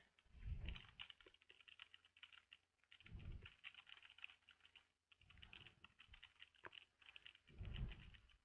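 Computer keyboard typing in quick runs of keystrokes with short pauses, as a sentence is typed. A few dull low bumps come in between, the first soon after the start and the loudest near the end.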